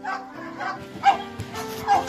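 A few short dog barks over steady background music, the loudest about a second in and just before the end.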